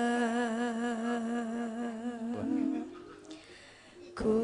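A Javanese sinden (female gamelan singer) holding one long sung note with a slow, wavering vibrato. It fades out about two and a half seconds in and gives way to a brief, softer note before the sound drops low.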